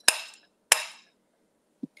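Metal slotted serving spoon struck twice against a glass bowl, two sharp clinks about half a second apart, each ringing briefly.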